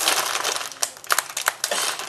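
Plastic packaging of mixed vegetables crinkling and crackling as it is handled and opened, in irregular bursts.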